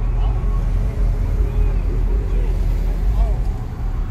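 Steady low rumble of an idling pickup truck engine close by, with voices chattering in the background.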